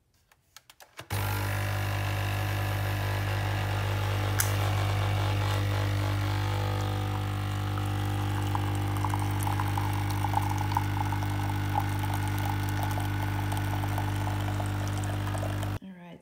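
Capsule coffee pod machine brewing: a few clicks, then its pump starts with a steady loud buzz about a second in and cuts off suddenly near the end. From about halfway a fine crackle joins the buzz as coffee streams into the cup.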